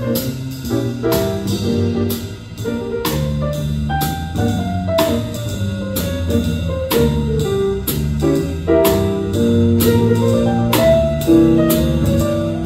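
Jazz trio of grand piano, electric bass and drum kit playing, with steady drum and cymbal strokes over piano chords and a walking bass line. A falling melodic line sounds about four to six seconds in.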